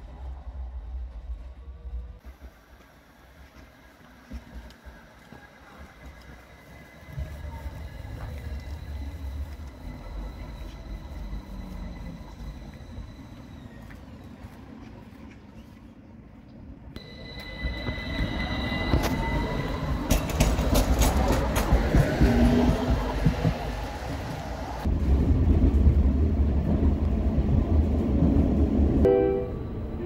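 Light-blue articulated electric tram pulling in and passing close by. Its motors whine with tones that glide upward, and it rumbles at low pitch. Wheels click over rail joints and the crossing in a quick run, which is the loudest part, in the second half.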